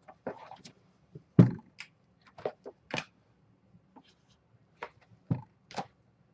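Hands handling a shrink-wrapped trading-card box and writing a number on its wrap with a marker: scattered short taps, rubs and squeaks, with one louder knock about a second and a half in.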